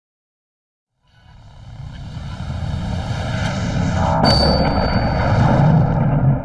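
A comedy sound effect: a low roar that starts about a second in and swells steadily for about five seconds, building to the boxing-glove punch, with a brief high whistle on top a little past the middle.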